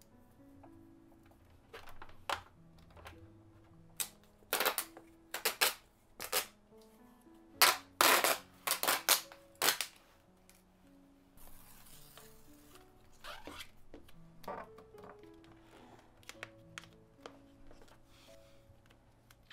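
Soft background music, with sharp plastic clicks and crackles from a white plastic cable cover being handled and fitted along a baseboard, loudest and most frequent between about 4 and 10 seconds in. A brief rustling hiss follows a couple of seconds later, then lighter taps as the cover is pressed into place.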